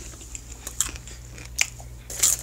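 Popcorn being chewed close to the microphone: a couple of sharp crunches, the loudest about one and a half seconds in, among softer chewing noises, over a steady low hum.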